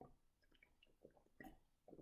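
Near silence with a few faint mouth sounds, sips and swallows, as carbonated soda is drunk from a can.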